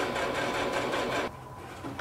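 Singer electric sewing machine running at a steady speed, a fast even run of stitches along a fabric hem, stopping a little over a second in.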